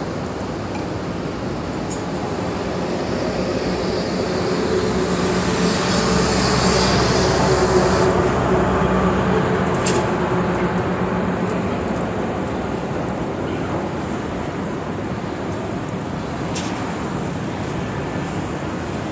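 Road traffic noise, swelling as a heavy vehicle with a low engine hum passes and fading away again. Two short sharp clicks stand out, one about halfway through and one near the end.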